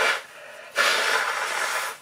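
A man blowing his nose into a paper tissue: a short blow at the start, then a longer, louder blow lasting about a second.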